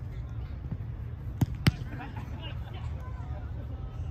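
A soccer ball kicked on artificial turf: two sharp thumps about a quarter second apart, about a second and a half in.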